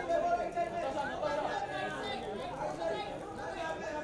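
Overlapping chatter of many voices: a crowd of press photographers talking and calling out at once, none clear enough to make out.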